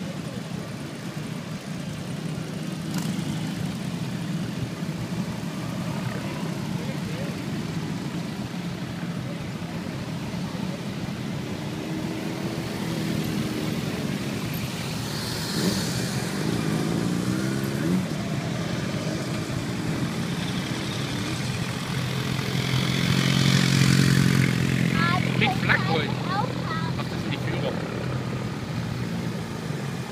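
A procession of many motorcycles and scooters riding past at low speed, their engines making a continuous mixed drone. Individual bikes swell and fade as they go by, the loudest pass coming about three-quarters of the way through.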